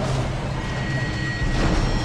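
Cinematic logo-intro sound design: a steady low rumble under a faint held high tone, with a swell building near the end.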